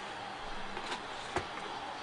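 Steady low hiss with a single faint click a little past the middle.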